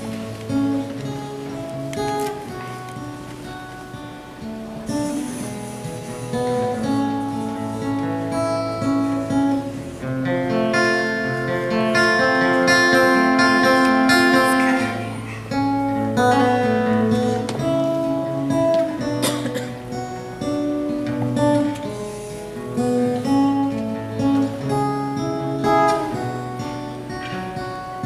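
Solo acoustic guitar being strummed and picked, a song played at a steady pace, getting louder for a few seconds partway through.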